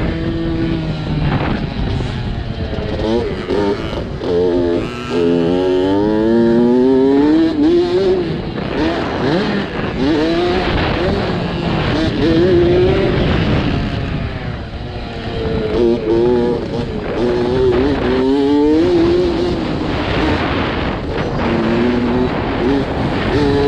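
Small youth dirt bike engine revving hard, as heard from the bike itself. Its pitch climbs and drops back several times as the rider works the throttle and gears.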